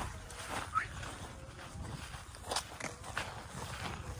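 Footsteps on a dry dirt path and grass, a few irregular steps.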